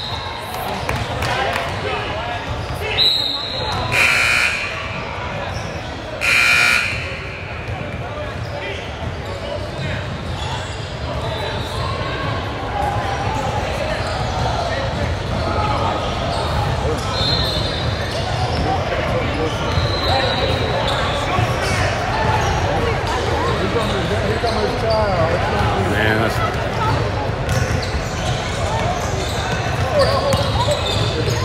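Busy indoor basketball gym: a steady din of many voices echoing in a large hall, with basketballs bouncing and short high sneaker squeaks. Two short, loud tonal blasts stand out about four and six and a half seconds in.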